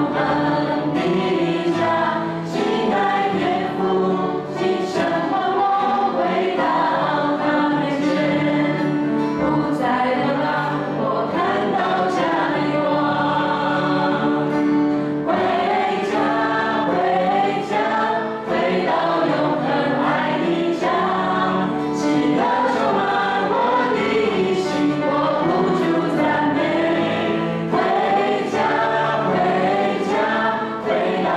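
A worship team of male and female voices sings a Mandarin praise song together into microphones, accompanied by acoustic guitar, continuously and at a steady level.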